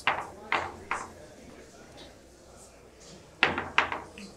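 Billiard balls clacking as they are knocked together and set out on the pool table: a few sharp clicks in the first second, then two more close together near the end.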